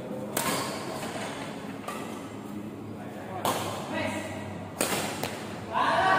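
Badminton rackets striking a shuttlecock in a rally: four sharp hits, roughly a second and a half apart. Voices come in near the end.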